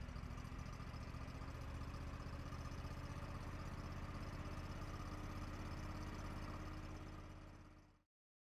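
Kohler ECH-series EFI V-twin engine running at low speed while its low-speed setting is raised back to the original, from about 1500 to about 2000 RPM. The engine note rises slowly over the first few seconds, then holds steady and fades out near the end.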